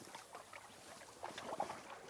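Faint, small splashes and lapping of water as a hand and a landing net move in shallow lake water, a little more noticeable past the middle.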